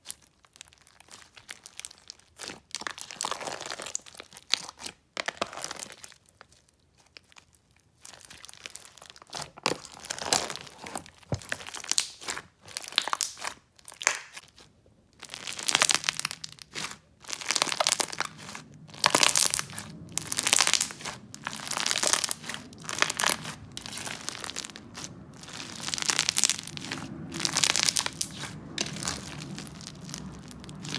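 Hands squishing and stretching a big batch of slime packed with foam beads, giving irregular bursts of squishing and crunching. The bursts come closer together and louder about halfway through.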